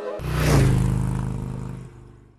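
A sound-effect hit: a sudden falling whoosh, then a deep rumble that fades away over about two seconds.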